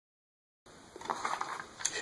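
Dead silence for about the first half-second, then a run of small, irregular clicks and scrapes: a hand screwdriver turning a small screw into a plastic radio-controller case, with the case being handled.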